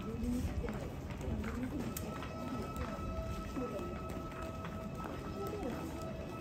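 Crowd voices and the irregular clicking of sandalled footsteps on stone paving as women in kimono walk past, over music with long held notes.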